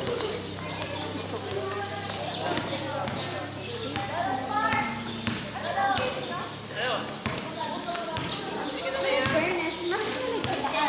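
Players and onlookers talking and calling out across an outdoor court, with scattered thuds of a ball striking the concrete.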